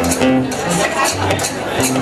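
A small live band playing folk music: acoustic guitars and a bass line of changing low notes, with hand percussion keeping a steady beat.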